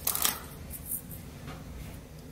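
Handling of a small plastic pencil-lead case: a brief crinkle of its wrapping at the start, then faint fiddling and small clicks as the case is worked open by hand.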